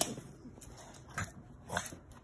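Small Yorkshire terrier puppy making two short, sharp sounds about half a second apart, beginning about a second in, with a sharp knock at the very start.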